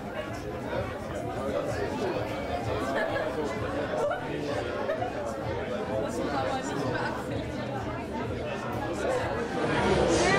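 A small group of young women chatting at once, their voices overlapping into indistinct conversation with no single voice standing out.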